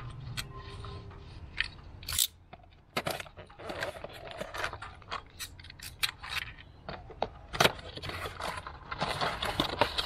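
A cardboard box of forged steel wheel nuts being handled and cut open, with scraping and rustling of the packaging and many sharp clicks and light clinks throughout, the loudest about two seconds in and just before eight seconds.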